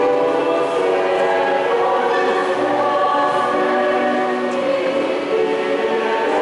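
A church choir singing a hymn in long held notes.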